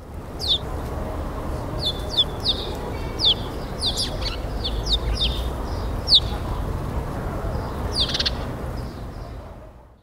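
Birds chirping: a dozen or so short, quick downward chirps scattered over steady low background noise, fading out near the end.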